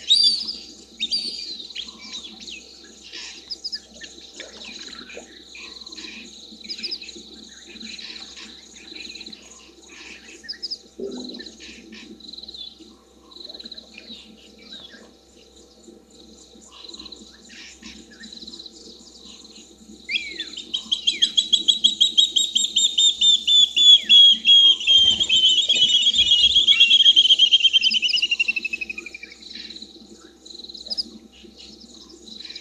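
Night-time bush sounds with scattered short chirps and a steady high insect-like note. About two-thirds of the way through, a bird gives a loud call of rapid repeated notes. The call grows louder, then slides down in pitch over about nine seconds and stops shortly before the end.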